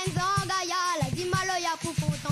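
A boy singing a melody with vibrato over live band accompaniment with a steady, quick drum beat; the voice breaks briefly about halfway through, then carries on.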